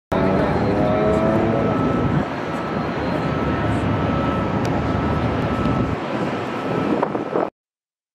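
Steady rumbling noise of vehicle traffic with a faint held tone, cutting off suddenly shortly before the end.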